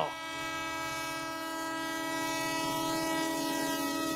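Train horn sound effect: one long steady blast that grows slightly louder.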